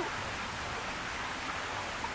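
Steady splashing of water from small fountain jets, an even wash of noise.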